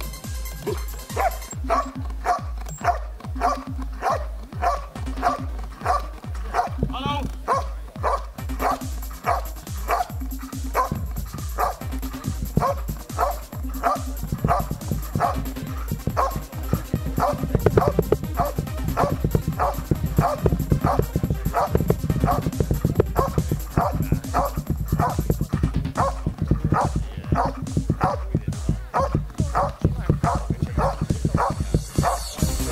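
A dog barking steadily and insistently, about two barks a second, at a helper hidden in a blind: the bark-and-hold of a protection routine. Electronic dance music with a steady beat plays underneath throughout.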